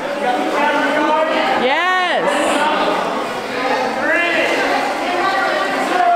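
Voices of a group of people in a cave, with one long drawn-out shout that rises and falls in pitch about two seconds in and a shorter one around four seconds.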